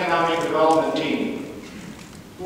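A man speaking in a formal address, his voice trailing off into a short pause near the end.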